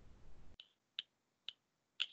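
Faint computer mouse clicks: about five short, sharp clicks half a second apart, one of them advancing the presentation slide.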